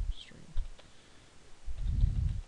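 Computer keyboard keys clicking as code is typed, with heavy breathing into the microphone as low puffs, the loudest shortly before the end.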